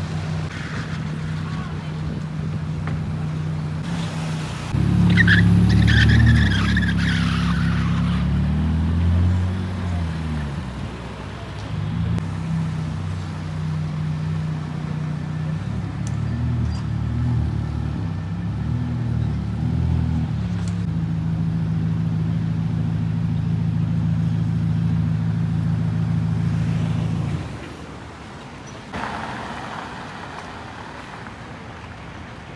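Ferrari Roma's twin-turbo V8 idling, then getting louder about five seconds in as it moves off, with light rises and falls in revs, running steadily before dropping away near the end.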